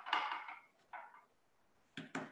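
Light handling noise as a wooden-handled paintbrush is set down and handled on the work table: a short rustle at the start, a softer one about a second in, and a sharp click near the end.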